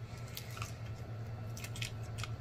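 Close-miked chewing of a mouthful of roasted onion: a scattering of short, wet mouth clicks and smacks over a steady low hum.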